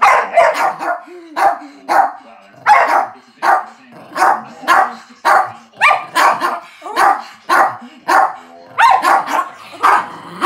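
An Australian Shepherd and a small grey shaggy dog barking at each other, a steady run of sharp barks about two a second, as they compete for their owner's attention.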